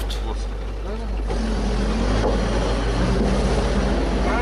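Off-road vehicle's engine running steadily under way, a low drone heard from inside the cab.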